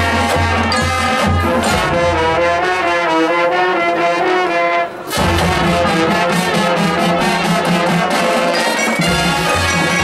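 Marching band playing, led by brass. The low notes fall away for a few seconds, there is a brief break about five seconds in, and then the full band comes back in.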